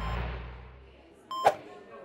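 A whoosh sound effect starts suddenly and fades away over about a second as the scene changes. About a second and a half in comes a short electronic beep.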